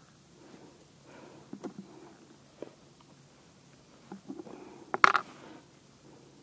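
Soft handling noises of hands working fishing tackle and groundbait: small rustles and light clicks, then one sharp knock about five seconds in, the loudest sound.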